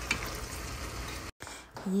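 Shredded cod with peppers and onions sizzling in a nonstick frying pan as a metal spoon stirs it. The sizzle cuts off abruptly a little over a second in.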